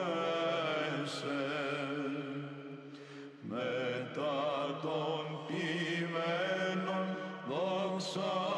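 Greek Orthodox Byzantine chant by a male monastic choir: a steady held drone under an ornamented, wavering melody line. The singing breaks briefly about three seconds in, and a new phrase begins.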